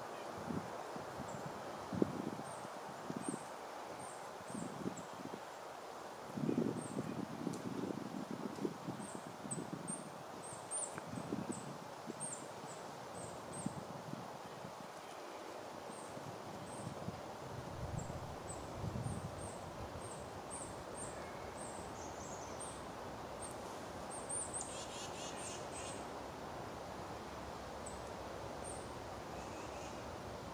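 Quiet woodland: faint, very high-pitched bird chirps repeat every second or so, with a short harsher bird call about 24 seconds in. Low rustles and dull thuds come and go through the first half and again around 18 seconds.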